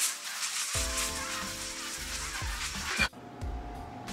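Intro music: a shimmering, hissy high wash over held tones, with a bass beat coming in under a second in. It cuts off abruptly about three seconds in, leaving only faint room sound.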